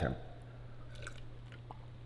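A man drinking water from a clear plastic cup, with a few faint swallows about a second in and again shortly after, over a low steady hum.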